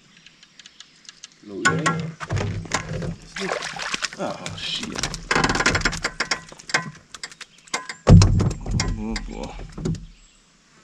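Indistinct talking mixed with many sharp knocks and clatter, starting about a second and a half in, with a loud low thump about eight seconds in.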